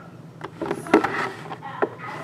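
A few sharp clicks and light knocks of a hard clear plastic helmet display cube being handled and turned on a tabletop.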